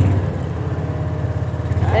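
Engine of a John Deere ride-on vehicle running steadily as it drives along at low speed, a low, even hum.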